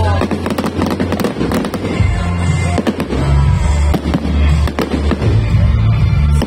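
Fireworks display: aerial shells bursting and crackling in quick succession, many sharp bangs through the whole stretch, over loud music with deep bass.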